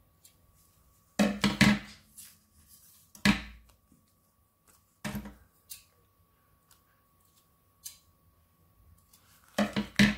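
Short, scattered taps and rustles of vellum and card being handled and set down on a paper trimmer, the loudest a cluster about a second in and another knock near three seconds in.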